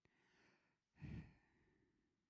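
Near silence, with a faint breath in the first half second and one short spoken word about a second in.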